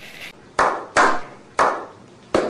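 Slow clapping: three single hand claps about half a second apart, each with a short ring of room echo.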